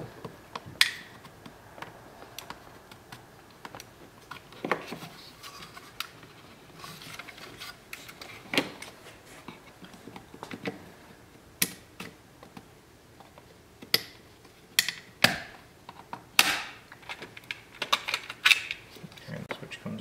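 Plastic retaining tabs clicking and snapping as a Volkswagen Jetta's master power window switch pack is pried out of its plastic bezel with a flat blade screwdriver. The clicks are sharp and come singly at irregular intervals, with light scraping of the tool on plastic between them.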